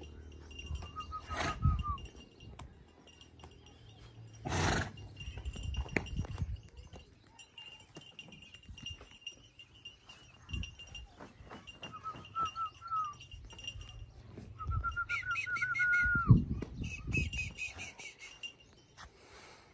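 A bird calling in short runs of quick repeated notes, three times, over farmyard ambience with a faint steady high tone. Scattered thumps and rustles, the loudest about sixteen seconds in, and two sharp clicks early on.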